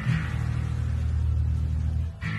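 Live rock band music: a low, bass-heavy chord held and ringing out, cut off sharply at the end.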